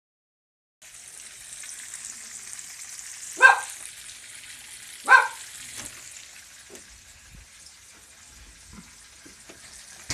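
Food sizzling in a frying pan, a steady hiss that starts just under a second in. A dog barks twice, short and loud, about three and a half and five seconds in.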